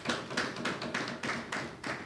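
Scattered clapping from a small audience: irregular sharp claps, several a second, in the pause after a line of a speech.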